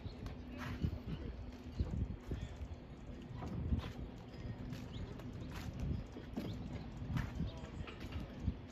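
Footsteps on a harbor dock, hard knocking steps about one to two a second, with a faint steady hum underneath.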